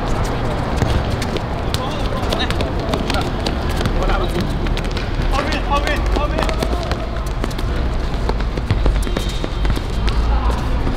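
Sound of a football game in play: players' voices calling across the pitch, with scattered sharp knocks of the ball being kicked, over a steady low rumble.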